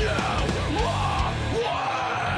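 Metalcore song: a screamed lead vocal over heavy distorted guitars and drums. The low end drops out briefly just before the end.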